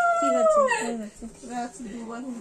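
Conch shell (shankha) blown in one long, steady note that sags and falls in pitch as the breath runs out, fading within the first second. Voices follow.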